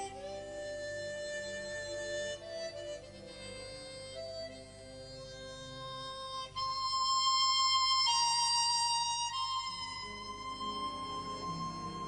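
Chromatic harmonica playing a slow, singing melody of long held notes with orchestral accompaniment. Its loudest moment is a high note held for a few seconds around the middle, with vibrato.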